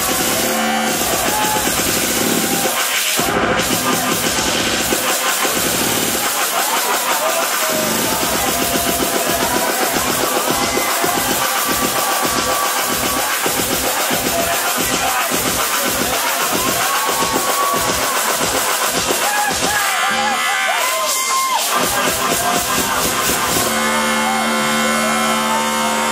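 Loud electronic dance music from a DJ set played over a club sound system, with a steady pulsing beat through the middle. A few seconds before the end the bass drops out for a couple of seconds, then comes back in.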